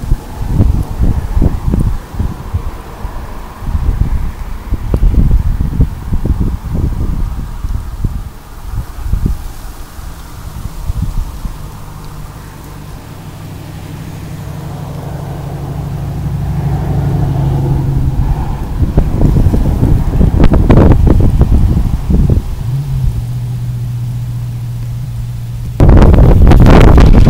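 Wind gusting against the microphone in irregular low rumbles. From about halfway through, a steady low engine drone grows louder for several seconds, then drops slightly in pitch near the end.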